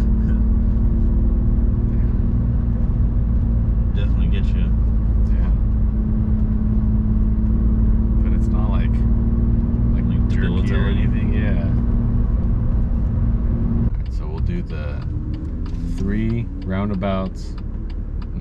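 BMW M2 Competition's twin-turbo straight-six heard from inside the cabin while driving: a steady engine drone over deep road rumble. About fourteen seconds in the drone drops away and the sound gets quieter.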